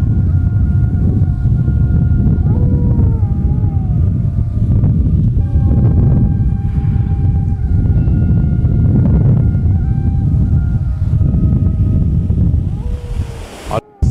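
Wind rumbling on the microphone over the wash of surf breaking on a beach, with faint thin whistle-like tones coming and going above it. The sound cuts out briefly just before the end.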